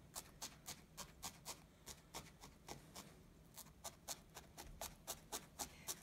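Felting needle stabbing repeatedly into wool: faint quick taps, about four a second, with a brief lull around the middle.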